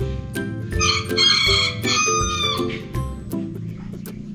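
Background music with a rooster crowing once over it, starting about a second in. It is one long call of about two seconds that drops in pitch at its end.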